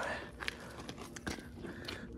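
Faint handling noise: a few light, scattered clicks and rustles.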